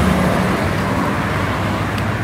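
Road traffic passing close: a light truck drives by with a steady low engine hum and tyre noise, and a car follows.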